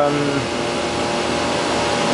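Steady drone of running machinery with a few faint steady hums in it, the end of a spoken word at the very start.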